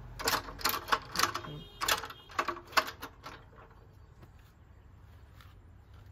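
A quick, irregular series of about nine sharp clicks and clacks over the first three seconds, then only a faint low hum.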